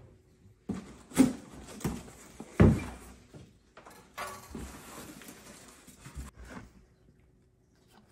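A cardboard shipping box being opened by hand: several sharp knocks and thuds in the first three seconds, then about two seconds of scraping and rustling as the hand reaches inside.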